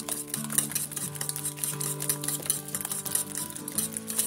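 Wire whisk beating eggs with chopped vegetables in a ceramic bowl: a quick, even run of strokes, the wires clicking and scraping against the bowl, over background music.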